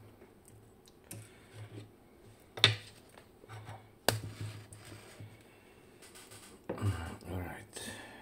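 Hands moving tools, a wooden tray and a metal lock cylinder about on a stone slab: scattered clicks and knocks with handling rustle between. The sharpest knocks come about two and a half seconds and four seconds in, with a busier run of handling near the end.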